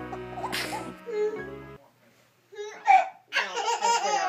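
Background music with a steady beat fades out in the first half, with a short breathy burst about half a second in. After a brief gap, a baby laughs and squeals in several short bursts, the loudest near the end.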